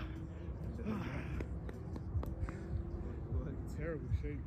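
Wind rumbling on the microphone, with a few sharp knocks of a soccer ball being kicked and a short shout near the end.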